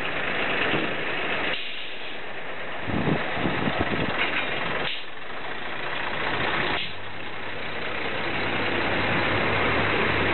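Regional train at a platform: mechanical noise that changes abruptly several times, with a run of knocks and rattles in the middle, then the railcar's engine running with a steady low hum over the last three seconds.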